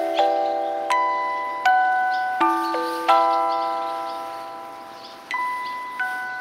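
Background music of bell-like chime tones, a chord struck about every 0.7 seconds and left to ring out, then a long fade before one more strike near the end.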